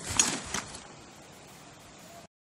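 Nylon bicycle trailer bag being handled: a short rustle about a fifth of a second in and a softer one half a second later, then faint hiss.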